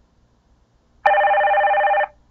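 Recorded telephone ring sound effect: one loud, steady ring that starts sharply about a second in and lasts about a second. It is the first of the two rings the slide plays when the phone is clicked.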